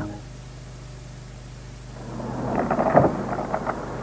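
Low tape hiss and steady mains hum from a VHS recording for about two seconds, then a rumbling noise that swells up with a few clicks.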